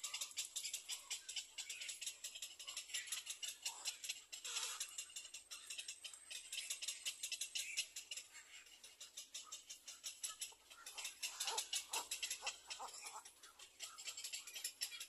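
Fast, high-pitched ticking chatter from animals, with a few short calls falling in pitch about four and a half seconds in and again around eleven to twelve seconds in.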